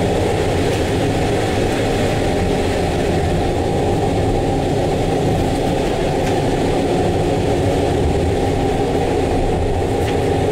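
Running noise of a moving passenger train heard from inside the carriage: a steady low rumble of wheels on the track.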